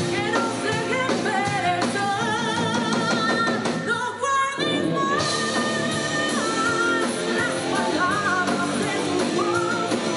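Live rock band playing: a woman's lead vocal over distorted electric guitars and a drum kit, the band dropping out for a moment about four seconds in.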